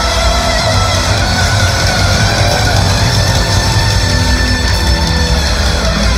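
A hard rock band playing loudly live, with drums and guitar.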